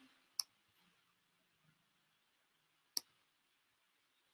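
Two faint computer mouse clicks, about two and a half seconds apart, with near silence between them, as an on-screen annotation tool is picked and used.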